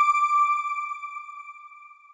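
A single high chime note from an end-logo sting, ringing out and fading away to nothing near the end.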